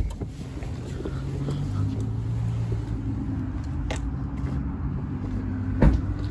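Phone handling and walking noise as the person carrying the camera gets out of a pickup truck and walks around it, over a steady low hum. There is a sharp thump at the very start and a louder, deeper thump just before the end.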